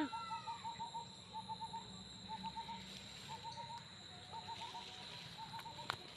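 Rapid runs of short, identical calls from an animal, several notes a second, stopping and starting again, over a steady high-pitched insect drone. A sharp click near the end.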